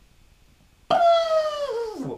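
A young man's high, drawn-out wordless yell of excitement, starting about a second in and sliding down in pitch before breaking off.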